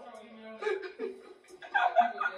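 People talking quietly with chuckling laughter.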